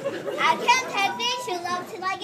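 High-pitched children's voices speaking, with no words that can be made out.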